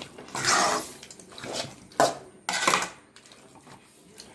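A metal spoon stirring chunks of masala-coated chicken around a kadai in a few separate scraping strokes, with a sharp clink against the pan about two seconds in.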